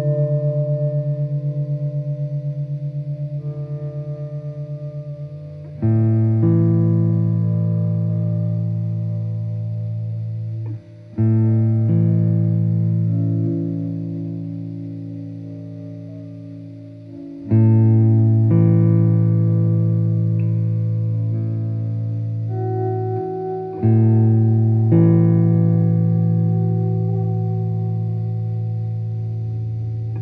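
Hollow-body archtop electric guitar playing slow chords, a new chord struck about every six seconds and left to ring and fade, with a few notes moving within each. The chord ringing at the start wavers quickly in level.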